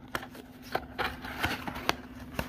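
Paperboard sunglasses box being opened by hand: the lid flap and inner packaging scrape and click, with several short sharp ticks across the two seconds.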